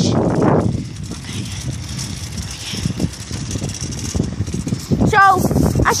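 Wind rumbling irregularly on a handheld phone's microphone while riding a bicycle, with a boy's voice breaking in near the end.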